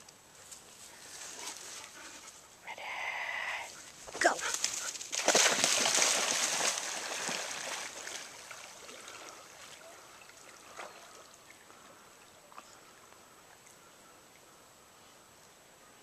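An Australian shepherd plunging into lake water. There is a burst of splashing about five seconds in that lasts a few seconds, then it fades to soft sloshing as the dog swims out.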